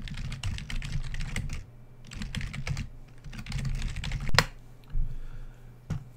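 Typing on a computer keyboard in three quick bursts of key clicks, followed by a single louder key strike about four and a half seconds in.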